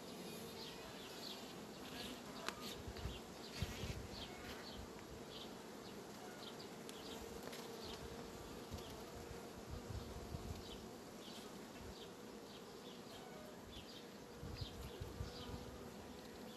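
Honeybees humming faintly and steadily on a comb frame lifted from an open hive.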